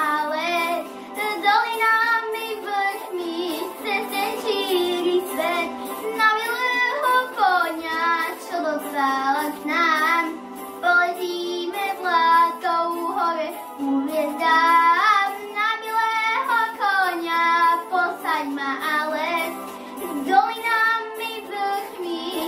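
A young girl singing into a handheld microphone, her long held notes wavering in pitch.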